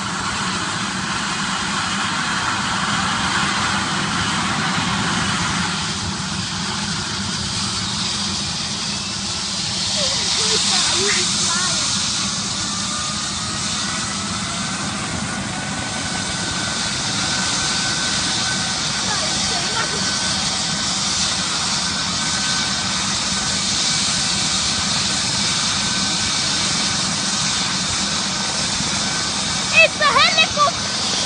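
Red MD 902 Explorer air-ambulance helicopter running on the ground with its main rotor turning: a steady turbine whine and rush. About twelve seconds in, a whine tone rises slightly in pitch and then holds steady.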